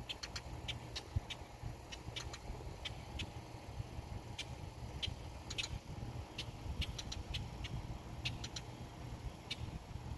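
Outdoor background sound: a steady low rumble with short, high-pitched ticks or chirps at irregular intervals, a few a second.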